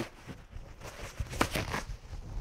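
A sheet of blue paper shop towel rustling and crinkling as it is handled, with a sharper crinkle about one and a half seconds in.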